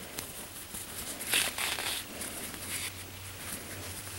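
Soft rustling of wool yarn being drawn through crocheted fabric with a yarn needle as the piece is handled, loudest about a second and a half in.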